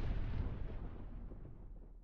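The low tail of a deep cinematic boom sound effect, dying away steadily.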